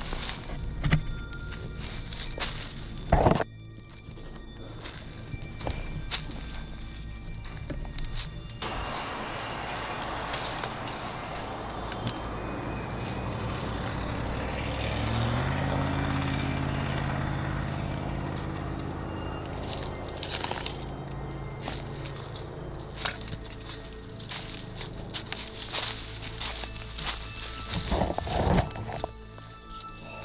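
Footsteps through leaf litter and twigs while walking in woodland, with a couple of sharp knocks, one early and one near the end. About halfway through, a passing vehicle swells and then fades. Background music runs underneath.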